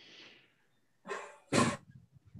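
A person coughing: a short cough about a second in, then a louder one right after. Before it, faint marker strokes squeak on a whiteboard.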